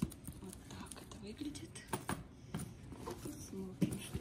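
Light handling of a fabric-covered zippered cosmetics case: a few short knocks and taps, one at the start, a pair about two seconds in and another near the end.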